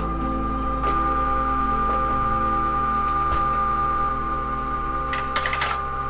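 Two brushless electric-skateboard motors spinning on a test bench under a FOCBOX Unity controller during a 120-amp current test, giving a steady electrical whine made of several constant tones over a low hum. A few light clicks come near the end.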